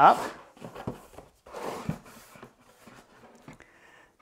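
A flat-packed cardboard box with a waxed lining being opened out by hand: a few short rustles and scrapes of cardboard as the flaps are folded up and hands slide over the base.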